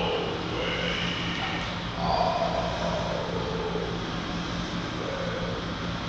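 A tenor singing a rapid tongue trill, a rolled 'r' carried on pitch, in short phrases; the one about two seconds in glides downward. A steady low hum runs underneath.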